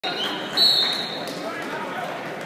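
A single sharp whistle blast, about half a second in and lasting under a second, the loudest sound, over background crowd chatter.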